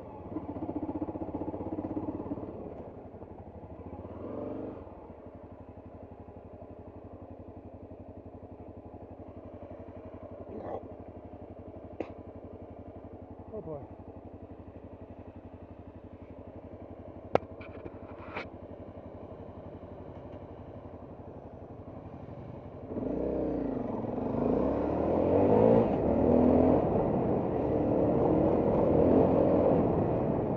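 Trail motorcycle's engine easing off and settling to a steady idle, with a few sharp clicks. About 23 seconds in, it revs up loudly and pulls away, with the pitch rising and falling through the gears over rough ground.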